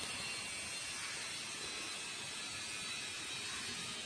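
Steady, even hiss of outdoor background noise, with an unsteady rumble low down and no distinct events.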